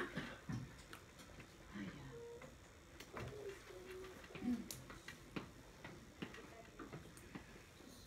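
Quiet classroom room tone: faint murmuring voices and a scattering of small clicks and taps.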